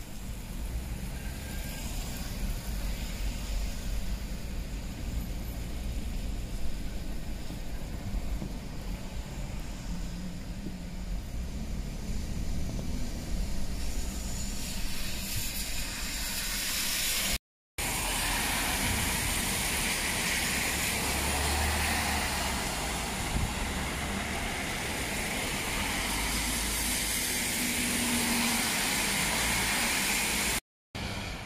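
Car driving on a rain-wet street, heard from inside the car: a low road rumble with tyres hissing on the wet surface. About halfway through the hiss grows much louder, and soon after the sound cuts out for a moment.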